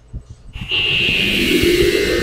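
The opening of a recorded radio programme playing from computer speakers: about half a second in, a loud, steady high tone with a rushing hiss starts suddenly over a lower band of sound.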